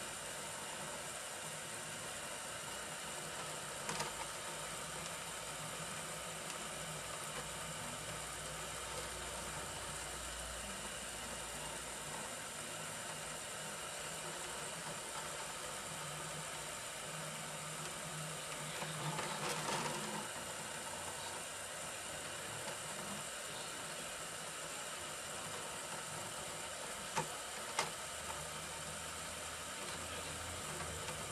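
MOD-t 3D printer printing: its motors drive the print bed back and forth under the extruder, giving a quiet, steady mechanical hum whose low tones shift as the moves change. Two sharp clicks come near the end.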